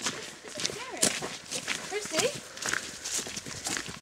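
Footsteps of several people walking through woodland undergrowth: a run of short, irregular steps, with quieter voices talking beneath them.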